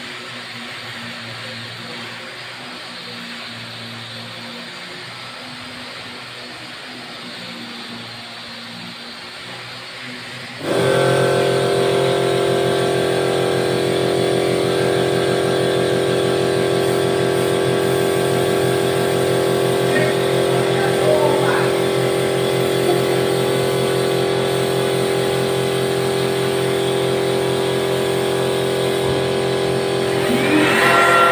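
A low steady hum, then about ten seconds in a motor starts abruptly and runs loud and steady at a constant pitch.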